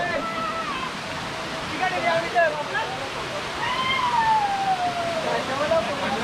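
Shallow rocky stream running steadily over stones, with voices calling over the water; about four seconds in, one long call falls in pitch.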